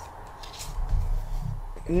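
Faint rustle of Pokémon trading cards being slid and fanned through by hand, over a low steady hum.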